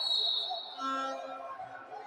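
A referee's whistle blown once in a short, high blast, then a voice calling out about a second in.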